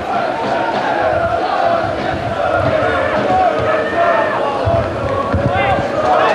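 Football stadium crowd: a dense mass of supporters' voices shouting, with some chanting.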